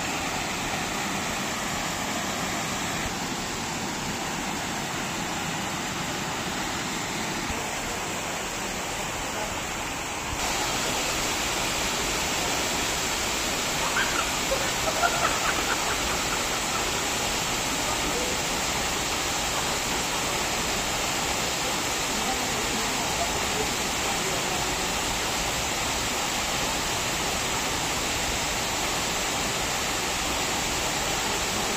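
Waterfall pouring into a pool: a steady rushing of water that steps up louder about ten seconds in.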